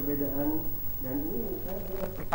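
An indistinct voice at moderate level, with drawn-out, bending pitched sounds and no clear words.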